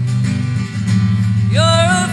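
Live solo acoustic guitar playing chords, with a woman's singing voice coming in about one and a half seconds in.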